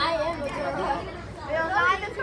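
People talking and chattering, with voices rising near the start and again just before the end; no other sound stands out.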